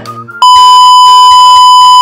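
Loud, steady high-pitched beep of a TV test tone, edited in with colour bars as a 'technical difficulties' sound effect, starting about half a second in. Quiet background music plays before it.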